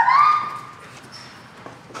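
A person's high-pitched, drawn-out yell of "stop", rising in pitch and lasting under a second at the start, followed by quiet shop background.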